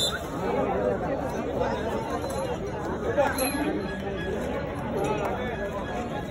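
Spectators in a crowd chattering, many voices talking over one another at once.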